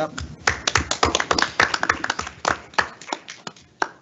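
Brief applause from a small group of people, each clap distinct, thinning out and dying away near the end.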